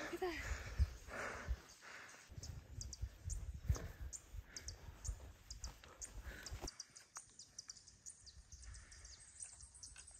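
Small birds chirping in short, high, repeated notes over low wind rumble on the microphone, with a hiker's heavy breathing in soft puffs. About two-thirds of the way through the sound drops to a fainter background.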